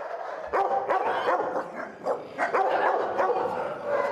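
Several shelter dogs barking together in their kennel cages, their barks overlapping in a continuous clamour.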